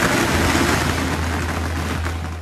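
Loud stage-speaker dance music at a transition: a rushing noise sweep over a held low bass note, with no beat or melody in it.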